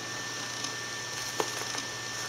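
Quiet room tone with faint handling of a plastic seedling cup and a small click about one and a half seconds in.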